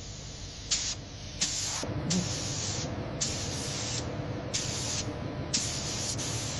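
Gravity-feed compressed-air spray gun spraying paint in short hissing bursts, roughly one a second, each under a second long, over a steady low hum.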